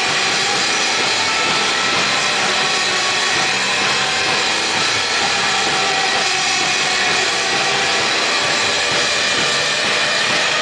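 Live surf-rock band playing loud with electric guitar, bass guitar and drum kit, the loud, steady music blurring into a dense wall of sound.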